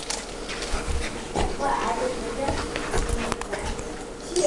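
Saint Bernard and Parson Russell terrier at play: short dog vocal noises with sharp clicks of chomping jaws scattered through.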